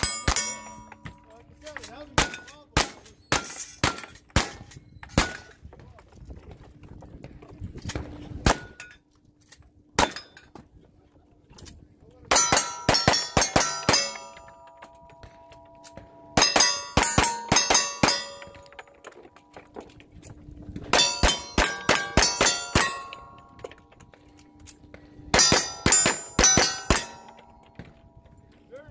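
Gunshots, each followed by the ringing clang of a hit steel target. There are scattered single shots over the first ten seconds, then four fast strings of rapid shots and rings.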